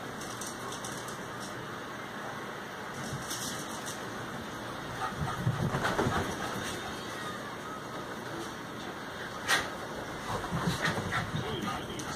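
Small dogs romping on a couch: scuffling and soft thumps of paws on the cushions, heaviest about six seconds in and again around ten to eleven seconds. A single sharp click about nine and a half seconds in is the loudest sound.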